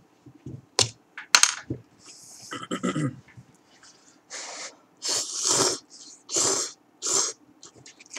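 A person slurping instant curry ramen noodles in four short noisy sucks in the second half. Before that come two sharp clicks and a short laugh.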